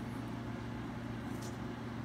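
Steady low mechanical hum of room background, like a fan or air conditioner running, with a faint brief rustle of handling about one and a half seconds in.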